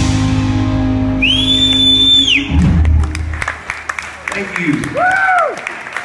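A live rock band of electric guitars, bass and drums holds its final chord and ends on a last hit about two and a half seconds in. A high whistle rises and falls over the held chord. Afterwards come scattered clapping and a rising-then-falling 'woo' from the audience.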